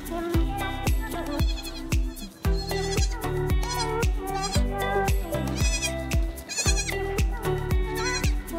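Background music with a steady beat, with week-old goat kids giving several short, quavering, high-pitched bleats over it.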